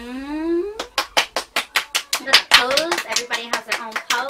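Two people clapping their hands rapidly, starting about a second in, several claps a second, with whooping voices over the applause.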